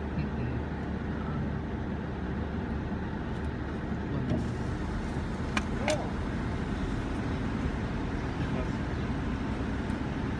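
Steady low rumble of a stationary car heard from inside its cabin, the engine idling, with distant road traffic. Two sharp clicks come close together a little after halfway.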